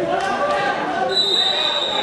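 Many voices of spectators and coaches calling out at once, echoing in a gymnasium during a wrestling bout. Just after a second in, a high steady whistle tone sounds and holds to the end.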